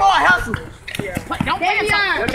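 Background voices talking and calling out, with a few short sharp thumps of a basketball being dribbled on an asphalt court.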